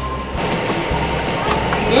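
Cardboard game box being opened and handled, with scraping and rustling and a couple of light knocks near the start, over background music with a steady bass beat.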